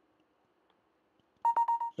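Near silence, then a quick run of about four short electronic beeps of one steady high pitch, packed into under half a second near the end.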